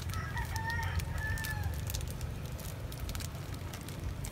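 A rooster crowing once, a single drawn-out call lasting about the first second and a half, over a steady low hum and scattered small clicks.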